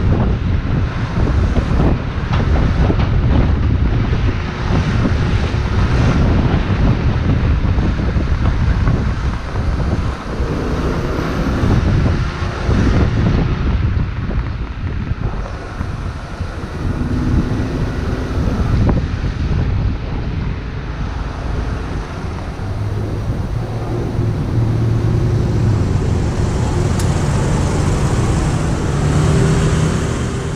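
Wind rushing over the microphone of a moving motor scooter, with the scooter's engine and surrounding city traffic underneath. A steady engine hum comes through more clearly in the last several seconds as the scooter slows among other scooters.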